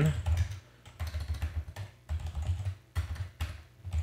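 Computer keyboard typing in several short runs of keystrokes with brief pauses between them.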